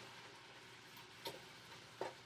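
Faint steady sizzle of ground beef and ground turkey browning in oil in a pot, with one light click of a stirring utensil against the pot a little after a second in.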